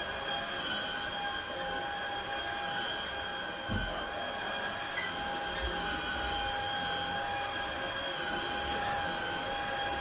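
Upright vacuum cleaner running over carpet: a steady high motor whine over a rushing air hiss, wavering slightly as it is pushed back and forth. A dull thump a little under four seconds in.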